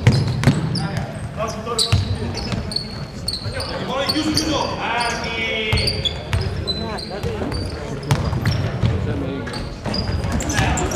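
Basketball dribbled on a wooden gym court, a run of thumps, with short high squeaks of sneakers on the floor and voices calling out.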